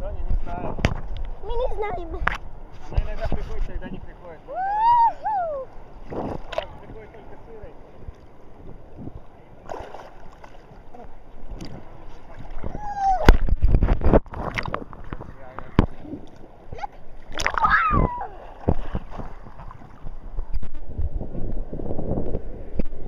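Sea water splashing and sloshing around a swimmer, with repeated knocks and rubbing right at the microphone and a few short vocal sounds, one clearly rising and falling about five seconds in.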